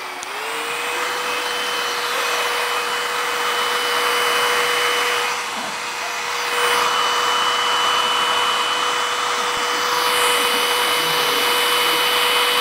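Handheld electric hair dryer running. Its motor whine rises in pitch during the first second as it comes up to speed, then settles into a steady whine over the blowing hiss, which dips briefly about halfway through.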